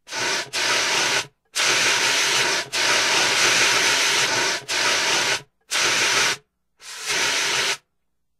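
Bursts of loud hissing noise, about seven of them, each half a second to two seconds long, switched on and off abruptly with dead silence between: a gated static-hiss sound effect laid over the intro graphics.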